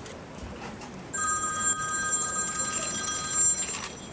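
A steady electronic ringing tone made of several pitches held together, starting about a second in and cutting off just before the end.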